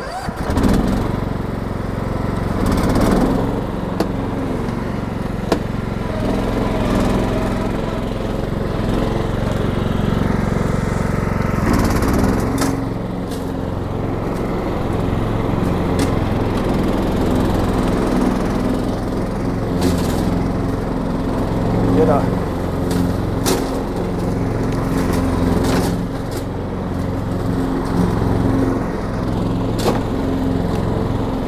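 STIHL RT 5097 ride-on mower's engine starting right at the beginning, then running steadily as the mower drives across the grass, with a few sharp clicks along the way.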